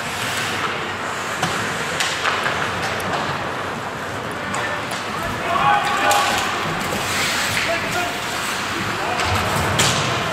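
Ice hockey play in an indoor rink: sharp clacks of sticks and puck, with a loud one near the end, over indistinct shouting from players, loudest about six seconds in.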